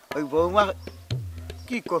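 A man's voice in drawn-out, expressive vocal sounds with few clear words. Underneath, a low steady hum starts about half a second in and stops near the end.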